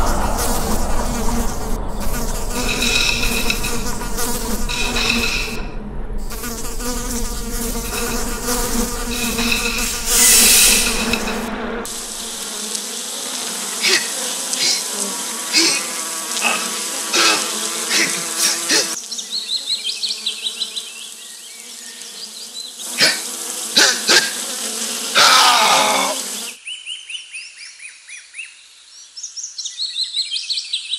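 Film sound design: a buzzing, droning bed of steady tones for about the first twelve seconds, then a run of sharp hits as wood splinters fly, which cuts off suddenly. Near the end, faint bird chirps.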